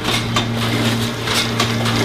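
Bartelt pre-made pouch filler/sealer running, cycling microwave popcorn bags at about 100 bags per minute: a steady mechanical hum under a rapid clatter of about four clicks a second from its moving parts.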